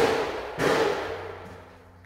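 Workshop tool noise: a run of sharp, noisy bursts about two-thirds of a second apart, each fading out, the last one about half a second in.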